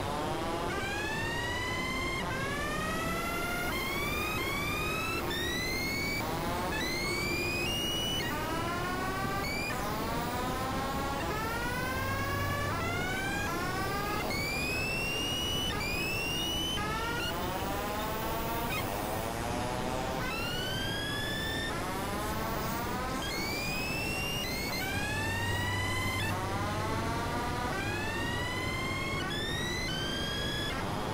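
Layered experimental electronic music: a steady stream of short synthesizer tones, each sweeping upward in pitch, about one every second, over a constant hiss.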